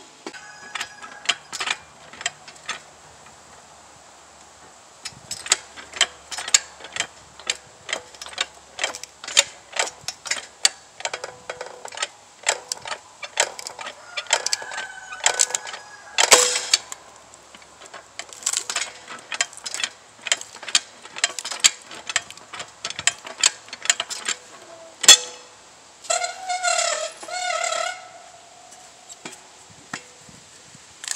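Manual hydraulic log splitter being pumped by its long handles: a run of metallic clicks and creaks, about two strokes a second, as the ram presses a green log against the wedge. Two louder sharp cracks, around halfway and again near the end, as the wood gives.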